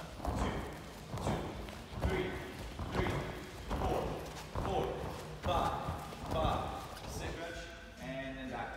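Voices in a large hall, in short calls spaced a little under a second apart, over light thuds of feet on gym floor mats.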